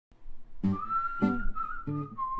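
A man whistling one long held note over strummed classical guitar chords. The whistle comes in just under a second in; the chords fall about every 0.6 s, three in all.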